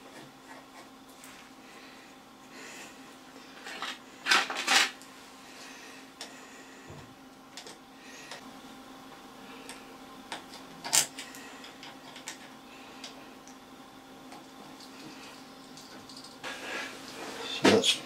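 Steel parts of a lathe's compound slide handle and end nut clinking as they are fitted by hand: two sharp metallic clinks about four seconds in, another near eleven seconds, and a few lighter ticks, over a faint steady hum.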